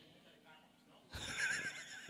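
A man's short, high-pitched, wavering laugh into a handheld microphone, starting about a second in.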